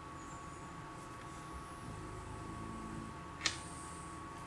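A single sharp computer mouse click about three and a half seconds in, over a faint steady room hum with a thin constant high tone.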